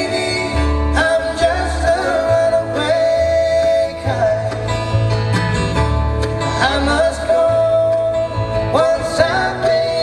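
Live bluegrass band playing an instrumental passage on acoustic guitar, mandolin and upright bass, under a melody line that slides up into long held notes several times.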